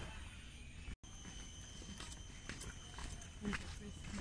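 Faint footsteps on a dirt forest trail, a few soft steps in the second half, over quiet background with a thin steady high tone.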